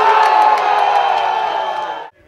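Football crowd cheering a goal, many voices shouting at once.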